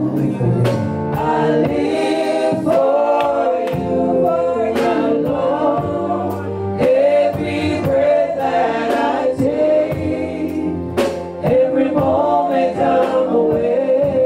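Gospel music: voices singing together over a steady beat.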